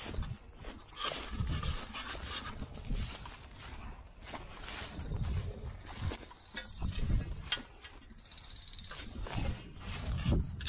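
Footsteps swishing through grass, with rustle and irregular low thumps from handling of a handheld camera held by someone walking.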